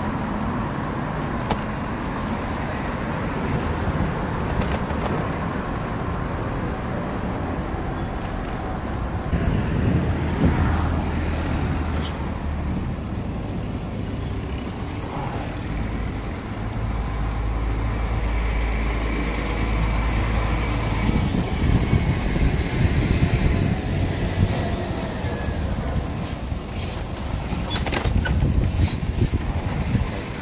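Urban road traffic heard from a moving bicycle: cars and vans passing, a continuous noise with a low rumble that grows louder in the middle.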